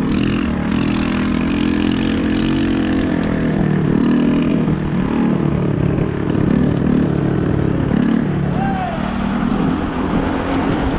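Wind buffeting the microphone of a fast-moving electric scooter, over the steady running note of a moped's small engine, its pitch rising and falling a little.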